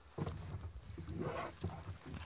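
Thin lace pulled with pliers through punched holes in a leather boot upper, a run of rubbing, creaking scrapes starting just after the start.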